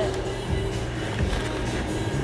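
Background music in a restaurant dining room over a steady low din, with a few soft low thumps from the phone resting on the table.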